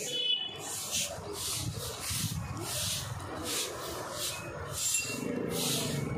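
Broom sweeping a paved surface: regular short swishes, about three every two seconds.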